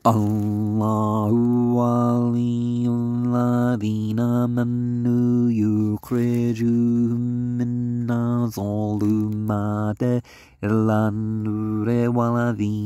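A man chanting a Quran recitation in Arabic on long, held low notes, with short pauses about six seconds in and again near ten seconds.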